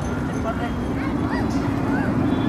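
A dog giving short, high yipping and whimpering cries, four or so in two seconds, over a steady background of outdoor crowd and traffic noise.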